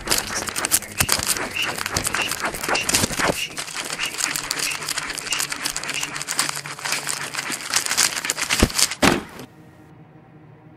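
Pen scratching hard and fast across notebook paper in dense, crackly strokes. It cuts off suddenly near the end, leaving a quiet low hum.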